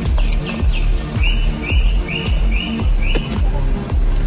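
Background music with a steady beat. Through the middle runs a series of about eight short, high chirps, evenly spaced, the last five on one pitch.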